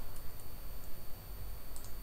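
A few faint, separate clicks of a computer mouse over a steady low hum.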